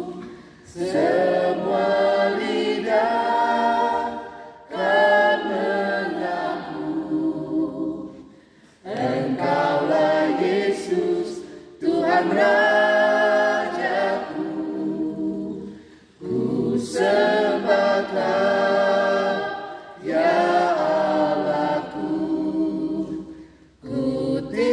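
A small mixed group of men and women singing a worship song a cappella in harmony, in about six phrases broken by short pauses for breath.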